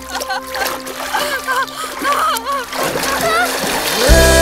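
Water splashing as people thrash about in a river, with voices crying out over background music.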